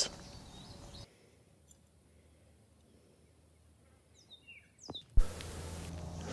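Near silence: a gap between edited clips, with faint room noise at first. Near the end come a few faint, short, falling high chirps, then a sharp click as steady room noise returns.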